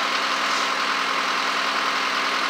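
John Deere backhoe loader's diesel engine idling steadily, a constant low hum with no change in pitch.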